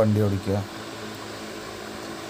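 A person's voice for about the first half second, then a steady low background hum.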